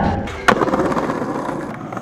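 Skateboard landing a trick, with one sharp clack of the board hitting the ground about half a second in, then its wheels rolling away and fading.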